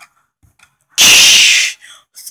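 A loud, short 'shh' hiss made with the mouth as a play sound effect, starting about a second in and lasting under a second.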